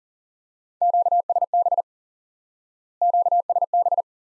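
Morse code sent as a keyed beep tone at 40 words per minute: two short groups of dits and dahs, about a second in and again near the end, spelling the Q-code QSB (signal fading) twice.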